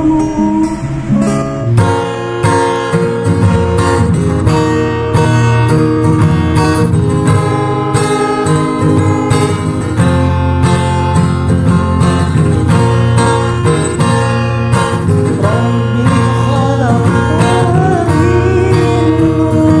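An acoustic sholawat song in an instrumental passage: acoustic guitar strumming chords in a steady rhythm. A singing voice comes back in near the end.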